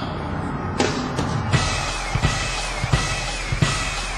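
Live R&B stage music: after a single hit, a drum-kit beat with a heavy kick drum starts about a second and a half in and runs on steadily.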